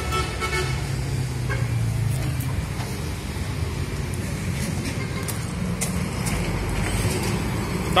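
Steady rumble of road traffic, with a held pitched tone in the first couple of seconds and a few light clicks.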